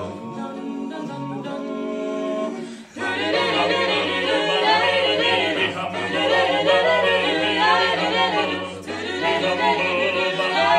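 Small mixed a cappella vocal group singing: held chords over a low bass line, then about three seconds in the singing turns louder and busier, with quick-moving vocal lines.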